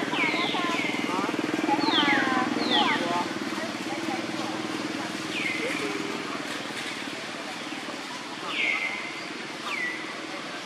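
Short, high animal calls, each sweeping downward, come singly or in quick pairs. They are densest in the first three seconds and recur a few times later, over a steady low hum.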